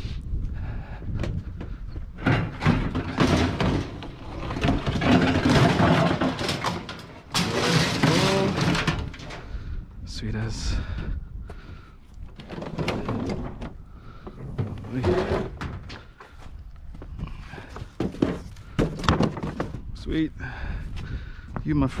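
Repeated knocks, thunks and clattering of bulky discarded household items, such as appliances, being handled and loaded, with a noisier scraping stretch in the middle.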